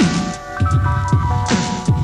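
Instrumental bars of a 1990s hip-hop beat with no rapping: deep kick-and-bass hits that drop in pitch, about four of them spaced roughly half a second apart, under held keyboard notes.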